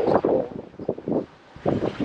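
Wind buffeting the microphone in irregular gusts at the helm of a sailboat under way, with a short lull about a second and a half in.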